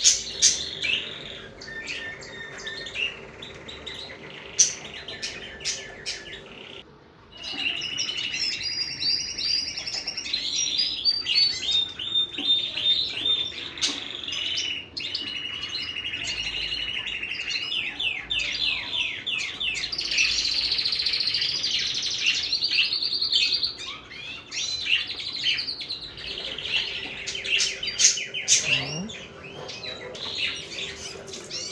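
Birds chirping and singing in quick, repeated chirps and trills, with a short lull about seven seconds in. A faint steady hum lies underneath at the start and again near the end.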